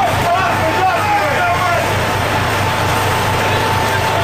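Steady machinery drone of a fishing boat, with a constant low hum and a thin, steady high whine over it. Voices are heard briefly in the first second and a half.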